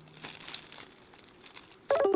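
Clear plastic bag crinkling faintly in short rustles as it is handled. Music comes in suddenly at the very end.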